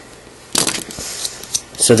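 Plastic modeling cutters snipping corners off a plastic Rubik's Cube piece: a quick run of sharp clicks about half a second in, and a couple more a second later.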